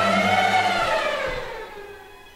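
A swelling pitched whoosh in a horror film's soundtrack that rises and then falls in pitch. It peaks about half a second in and fades away near the end, over low sustained drones from the score.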